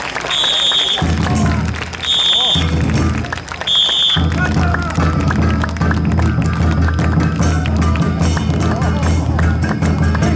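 A whistle blown in three short blasts about a second and a half apart, the kind used to cue a dragon dance troupe's moves. Loud music with a heavy bass beat comes in, drops out briefly after the second blast, and then plays on steadily.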